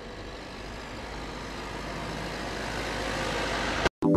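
Street traffic noise with a vehicle engine, growing steadily louder as the vehicle approaches, then cutting off suddenly near the end.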